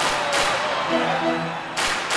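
Background music score: heavy hits at the start and near the end, with a short low riff of repeated notes between them, over steady crowd noise from a stadium.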